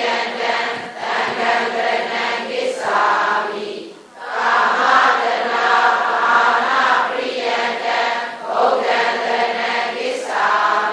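A group of voices chanting Buddhist scripture in unison, in a drawn-out, sing-song recitation. The chant breaks off briefly for a breath about four seconds in, then resumes.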